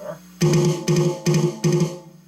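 Electronic drum kit's snare pad struck hard on the rim, so that it sounds a deep, pitched snare sample instead of a rim click. Four drags in a row, each a quick flurry of strokes into an accent, evenly spaced about half a second apart.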